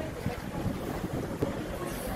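Wind buffeting the microphone outdoors: a low, uneven rumble.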